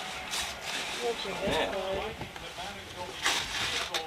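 Low background chatter, with a few short bursts of paper rustling as a wrapped gift is opened; the loudest rustle comes near the end.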